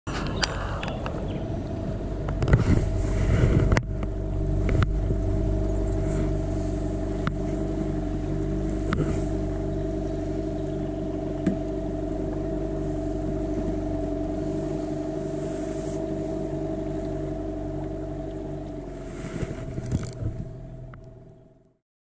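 A boat's motor running at a steady speed, a constant drone over a low rumble, with a few louder thumps about three seconds in; it fades out near the end.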